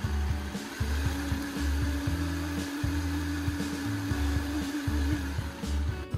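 Countertop blender motor running at speed, blending a pineapple, coconut milk and ice mix, a dense steady whirr with a held hum, over background music with a low beat.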